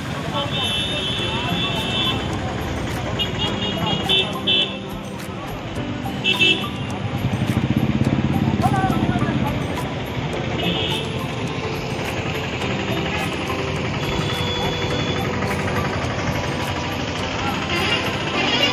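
Busy bus-stand ambience: steady crowd chatter with buses and motor vehicles running, and a few short horn toots spread through. A vehicle engine swells louder around the middle.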